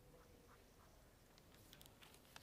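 Near silence: faint room tone, with a few faint clicks near the end.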